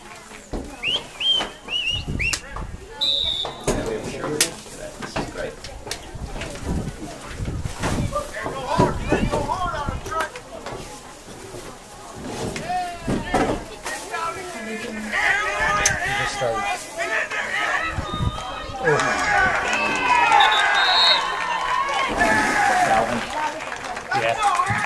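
Indistinct spectator voices at a football game, talking and calling out over one another, growing busier and higher-pitched in the second half as a play unfolds. A short high whistle-like tone sounds about three seconds in.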